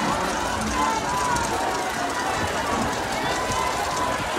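Indistinct, untranscribed talking voices over a steady background noise.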